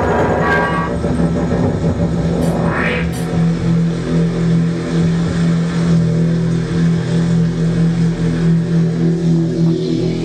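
Live electronic drone from synthesizers and effects: loud sustained low tones layered into a thick chord. A noisy rising sweep about three seconds in, after which the drone settles into a steady low hum-like chord that wavers slightly in level.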